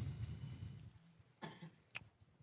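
A brief, faint cough about one and a half seconds in, followed by a soft click just before the end, in an otherwise quiet room.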